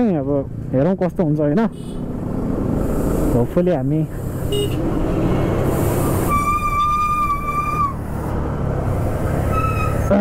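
Motorcycle riding with steady engine and road noise; about six seconds in a vehicle horn sounds one steady note for about a second and a half, and a short toot follows near the end.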